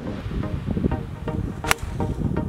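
A golf club striking the ball on a full tee shot: one sharp, crisp click near the end.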